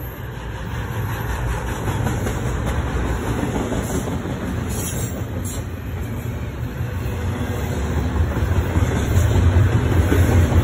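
Double-stack intermodal container cars rolling past close by: a steady rumble of steel wheels on the rails that grows louder toward the end, with a few brief high-pitched squeaks about halfway through and near the end.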